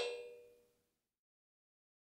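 The last of a suspended cymbal's ring after a mallet roll. The ring is cut off sharply, and a faint shimmer dies away within about half a second, leaving silence.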